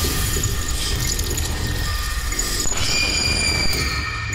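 Eerie TV vignette soundtrack: a steady noisy wash with thin, high held tones over a low rumble.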